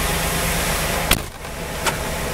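A 1993 Corvette C4's passenger door is shut with a single thump about a second in, and the outside sound drops off briefly after it. The car's LT1 V8 idles steadily underneath.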